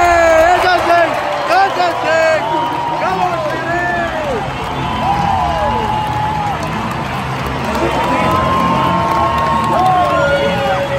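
Stadium crowd cheering and shouting, many voices calling out over one another, some calls held for a second or two.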